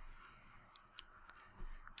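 Quiet room tone with a few faint, short clicks in the middle, then a soft breath-like noise near the end.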